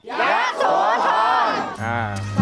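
A crowd of people shouting 'Yasothon!' together in one long drawn-out cheer.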